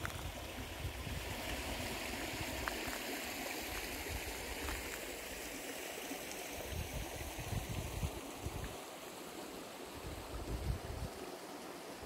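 Small mountain stream running steadily over rocks, its flow raised by melting snow and ice and recent rain, with gusts of wind rumbling on the microphone.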